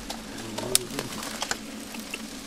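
Dry grass and bamboo stalks crackling and snapping as they are gripped and pulled apart by hand, with a few sharp cracks, the loudest just before halfway. A short low call sounds briefly near the middle.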